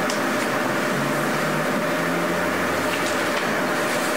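Steady background hiss with a faint hum in a meeting room, no speech.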